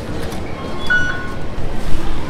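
Busy underground station concourse noise with a steady low rumble, and one short high electronic beep about a second in from a fare-gate card reader.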